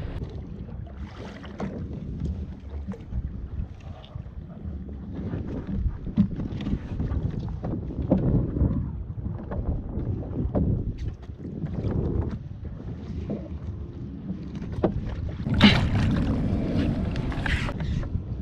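Wind buffeting the microphone over open sea, with water sloshing against a plastic fishing kayak's hull and a few sharp knocks from gear aboard. The noise gusts up and down, with a louder rush near the end.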